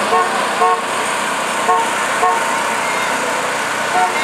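Vehicle horn tooting in two quick double beeps, each beep short, the two of a pair about half a second apart, over steady street noise.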